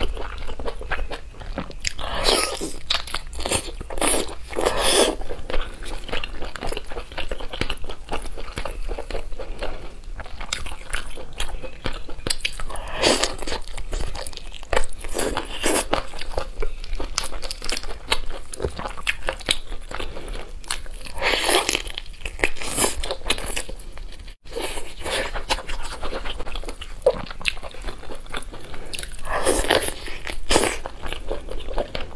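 Close-miked eating of a whole spiced steamed chicken: meat and skin torn apart by gloved hands, then bitten and chewed, with many small clicks and several louder bursts.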